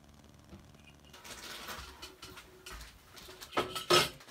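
Egg wash being poured from a metal bowl onto bread pieces in a cast iron Dutch oven: a soft wet splatter starting about a second in, then two sharp metal knocks against the pot near the end.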